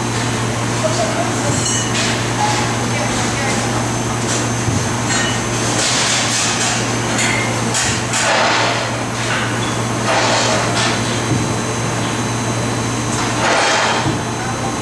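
TRUMPF laser cutting machine running: a steady low machine drone, with short hissing surges every couple of seconds in the second half.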